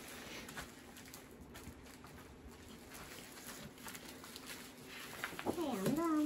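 Faint, soft rustling and patting of hands pressing a sheet of paper down onto painted bubble wrap, with a low steady hum underneath; a voice speaks briefly near the end.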